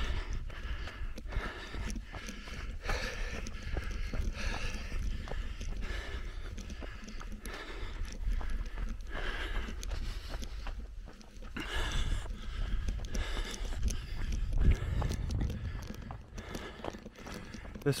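Running footfalls on a dirt trail, a steady quick rhythm of foot strikes, over a low rumble on the microphone.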